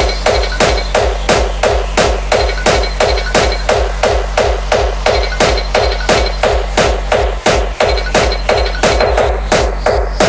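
Crossbreed / J-core hardcore electronic music: a fast, even rhythm of hard percussive hits over a deep bass, with a brief dropout about seven and a half seconds in.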